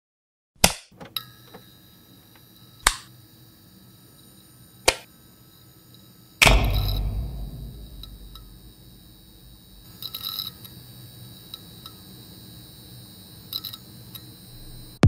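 A few sharp clicks or hits, then about six seconds in a loud, deep boom that dies away over a couple of seconds, over faint steady high tones.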